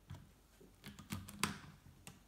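Faint rubbing and small clicks as a rubber balloon is stretched and worked onto the neck of a plastic bottle, with a sharper click about one and a half seconds in.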